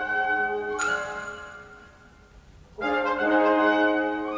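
Orchestra with prominent brass and trumpets playing two sustained chords. Each chord swells and then fades, and the second enters a little under three seconds in. A brief bright accent sounds about a second in.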